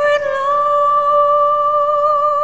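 A female soprano voice holding one long high note with a slow vibrato.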